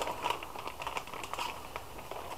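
Plastic zip-top bag crinkling and rustling in the hands as a slab of pork loin is slid into it, a run of small irregular crackles.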